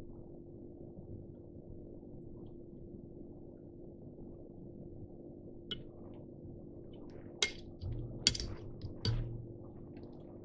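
Faint steady low hum, with a few light clicks and ticks in the second half as copper wire is wound over a nymph held in a rotary fly-tying vise.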